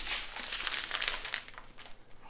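Strips of small plastic bags of diamond-painting drills crinkling and crackling as they are handled, thinning out toward the end.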